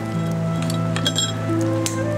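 Background music of soft held notes, with a few bright glass clinks about a second in and again near the end as beer glasses are brought together for a toast.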